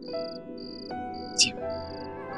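Crickets chirping in an even pulse, a bit under two chirps a second, under soft background music of held notes. A brief, sharp high sound cuts in about one and a half seconds in.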